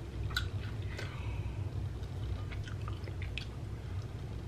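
A person chewing a small bite of butter-seared giant scallop, with soft wet mouth clicks scattered throughout, over a steady low hum.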